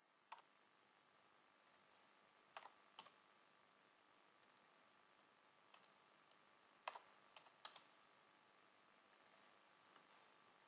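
Faint, sparse clicks of a computer keyboard and mouse, single clicks and quick pairs a few seconds apart, over near silence.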